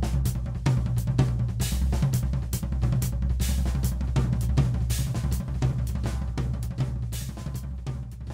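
Drum kit played continuously: a repeating nine-stroke fill with the hands crossed over each other (cross-sticking), moving between cymbals and drums over steady bass drum, with frequent cymbal hits.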